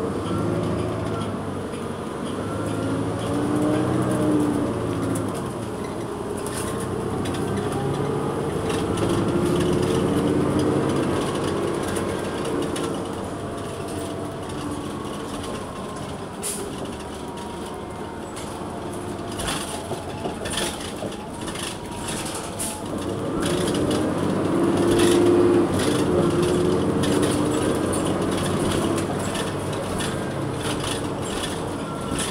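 A New Flyer XN40 bus's Cummins Westport ISL-G natural-gas inline-six heard from the rear of the passenger cabin, revving up and easing off in three surges as the bus drives. Interior panels and fittings click and rattle, more often in the second half.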